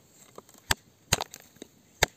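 A digging tool striking dry, stony ground in sharp knocks: one about two-thirds of a second in, then a closer pair just past a second, with lighter clicks between.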